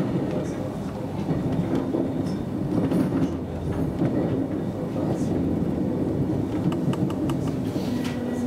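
Intercity train rolling slowly through a station's track throat, heard from inside a cab: a steady rumble of running gear, with a quick run of clicks from the wheels crossing points and rail joints near the end.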